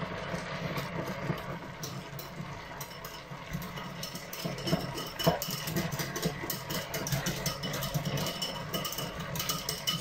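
A wire whisk stirs flour and water into a thickening slurry in a small ceramic bowl: a fast, continuous run of light clicks and scrapes of the wires against the bowl. A steady low hum runs underneath.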